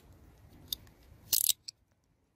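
Fingers handling a thin cut tomato scion and plant stems at close range: a few small clicks, then a short crisp crackle a little past the middle.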